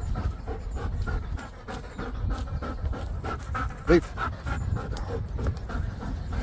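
Belgian Malinois dog panting hard, out of breath from running after a ball.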